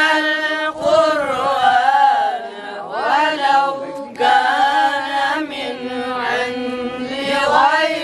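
A group of boys chanting a hymn together in unison into a microphone. Short breaks between lines come about one second and about four seconds in.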